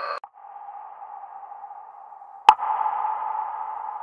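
A held, ringing tone that drops off sharply just after the start and carries on faintly. About two and a half seconds in, a sharp click sets off a louder held tone, and a second click near the end does the same.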